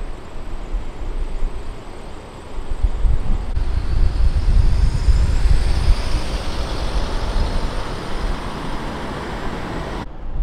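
A motor vehicle driving past: a low rumble that builds from a few seconds in, is loudest in the middle, then fades into steady traffic noise, with a faint high whine rising as it passes.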